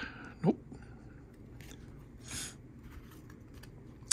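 Trading cards being handled, one card sliding across the others: a soft swish about two seconds in, among faint rustles.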